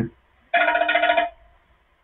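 A short electronic ringtone trill, a steady pulsing tone lasting just under a second, starting about half a second in.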